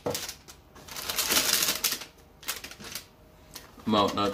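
Quick clicks and rustling from something being handled, loudest between about one and two seconds in.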